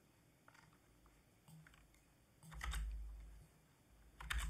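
Computer keyboard typing: a few faint keystrokes, then a short burst of key presses a little past halfway, with near silence in between.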